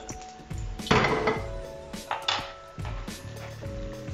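Metal cooking pot clattering as it is handled on the stovetop, with a loud clatter about a second in and a sharp knock a little after two seconds. Background music with held notes plays underneath.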